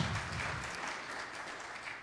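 Congregation applauding, the clapping gradually fading out.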